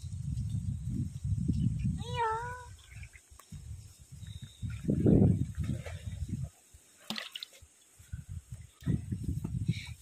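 Gusts of wind buffeting the microphone in irregular low rumbles that come and go, with one short high, wavering vocal cry about two seconds in.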